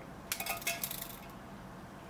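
A few light metallic clinks and ticks, bunched about half a second in: a steel tape measure's blade knocking against the cut edge of a sawn-in-half steel wheel.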